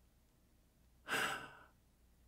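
A man's short sigh, a single breathy exhale about a second in that lasts about half a second.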